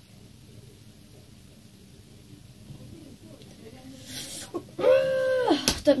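Quiet room tone, then about four seconds in a short hiss, followed by a loud, drawn-out high whining cry that rises and falls in pitch, and a sharp click just before the end.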